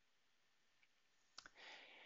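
Near silence, then a single faint click about one and a half seconds in, followed by a soft hiss.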